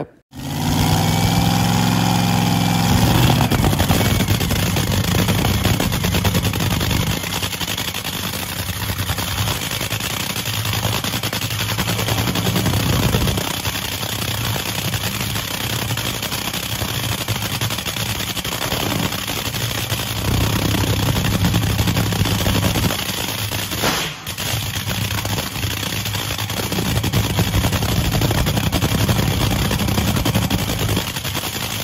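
Supercharged nitromethane-burning V8 of a Top Fuel two-seat dragster firing up about half a second in. It then runs loudly and continuously at warm-up idle, with a brief dip in level about three-quarters of the way through.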